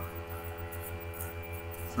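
A steady low electrical hum that throbs rapidly, with a few faint light scratches from handling.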